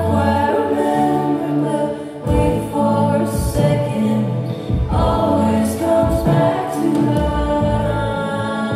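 Live indie-pop band: lead and backing vocals singing held, layered notes over keyboards, with low bass and drums coming in about two seconds in.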